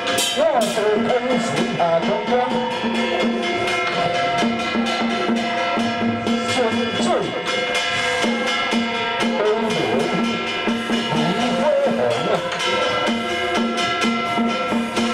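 Taoist ritual music: quick, steady drum and percussion strokes over held instrumental tones, with a priest's chanting voice through a microphone rising and falling above it.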